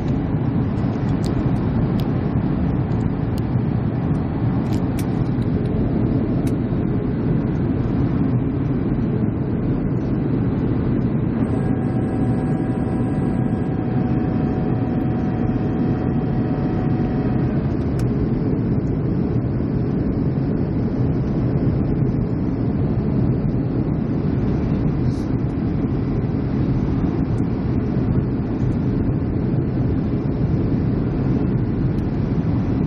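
Steady jet engine and airflow noise heard from inside a jet airliner's cabin on descent with the flaps extended, a deep even rumble. A faint steady whine comes in for about six seconds near the middle.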